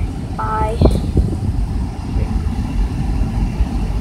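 Low, steady rumble of a car heard from inside the cabin, with a short knock a little under a second in.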